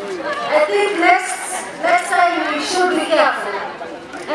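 A woman speaking into a handheld microphone, with crowd chatter behind her.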